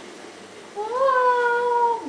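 A voice singing a long high 'aah', sliding up and then held level for about a second, starting near the middle.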